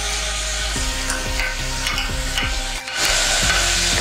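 Chopped vegetables sizzling in an open pressure cooker while a steel ladle stirs them, knocking and scraping against the pot wall several times. The sizzle grows louder about three seconds in.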